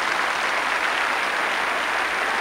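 Large audience applauding steadily at the end of a dance performance, heard on an old VHS recording.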